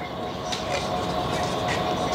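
Steady machine hum with a few held tones over a background of even noise, with no distinct knocks or impacts.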